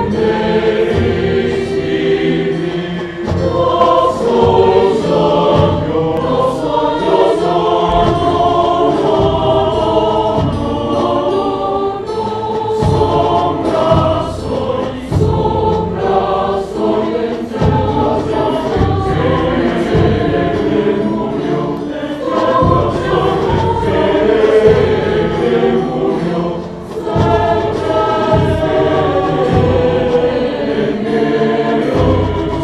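A choir singing a slow piece in several-part harmony, with low beats sounding every second or two underneath.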